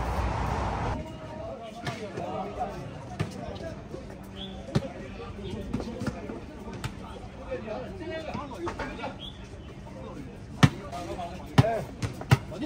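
A basketball bouncing on an outdoor hard court in a pickup game, irregular single thuds, the loudest two near the end, with players' voices in the background. A steady noise at the start cuts off abruptly about a second in.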